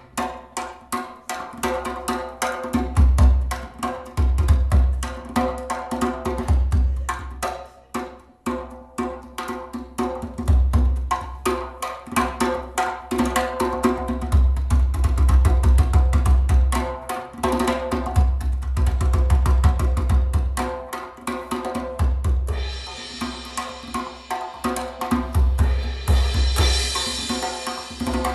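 Live instrumental band music with guitars over a drum kit played in fast, dense strokes, with pulsing low bass notes underneath. A bright cymbal wash comes in near the end.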